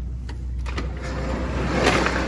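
A steady low mechanical hum, like a running engine. A rush of noise swells in the second half, with a few light knocks and a sharper one near the end.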